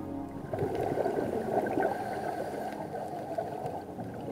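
Bubbling, gurgling water from about half a second in, the sound of a scuba diver's exhaled regulator bubbles, heard over soft new-age background music.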